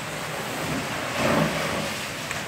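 A house fire burning: a steady rushing noise that swells louder about a second in.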